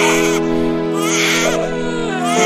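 A cartoon crying sound effect, loud wailing sobs in repeated bursts, over background music with steady held chords.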